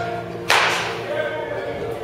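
A baseball bat hitting a ball in a batting cage: one sharp crack about half a second in, ringing briefly as it fades.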